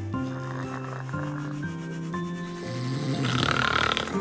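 Background music moving in short, stepped notes, with a person snoring, a rasping snore swelling about three seconds in.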